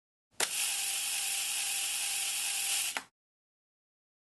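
A sharp mechanical click, then a steady whirring hiss with a faint hum in it for about two and a half seconds, cut off by a second click.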